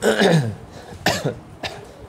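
A man coughing, three short coughs, the first and loudest at the start, then two more about a second in and a little after.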